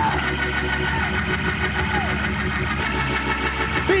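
Gospel church band holding sustained keyboard chords over a steady bass, with no lead vocal, between sung lines of a worship song.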